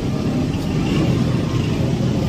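A motor running with a steady low rumble.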